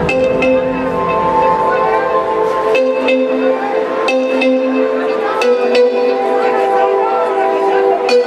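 Live electronic music over a loud concert PA: held synthesizer chords with sharp percussion hits, and a voice mixed in above it.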